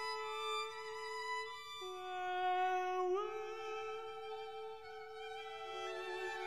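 Bowed string instruments playing an instrumental passage of slow, held notes in two or three parts, each part moving to a new pitch every second or two.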